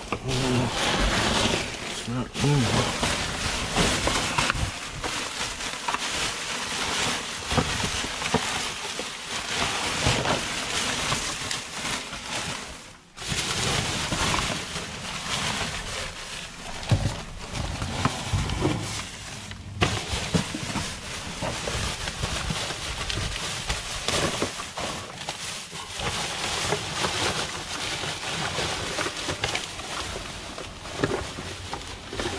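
Plastic garbage bags rustling and crinkling continuously as gloved hands dig through a dumpster's trash, with small crackles and knocks throughout.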